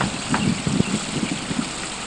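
Wind on an outdoor microphone: a steady rushing hiss with irregular low thumps of buffeting in the first second.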